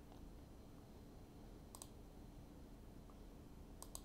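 Near silence with a few faint computer-mouse clicks, the clearest one near the middle and another just before the end.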